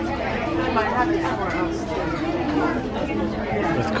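Indistinct chatter of several people talking at once, a steady murmur of voices.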